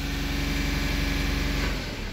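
Audi A8 engine held at raised revs, about 2,800 rpm, heard from inside the cabin while the scan tool runs the bank 2 intake manifold runner (swirl flap) motor adaptation with brake and throttle pressed. Near the end the engine speed drops as the adaptation ends automatically.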